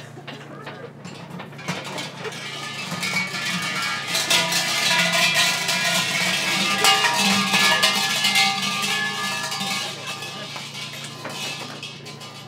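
Several hollow metal Shinto shrine bells (suzu) rattled by their swinging red-and-white bell ropes. The jangling, ringing clatter builds from about two seconds in, peaks in the middle and dies away near the end.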